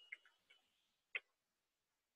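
Near silence with a few faint keyboard keystroke clicks, the clearest a single sharp click just after a second in, as a query is typed.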